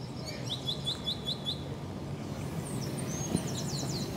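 Small birds chirping outdoors: a quick run of about six chirps in the first second and a half, then more high, falling calls near the end, over steady low background noise.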